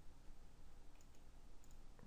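A few faint clicks of a computer mouse scroll wheel over low room noise, about a second in and again a little later.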